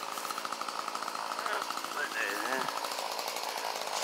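A small engine running steadily with a fast, even pulse in the background.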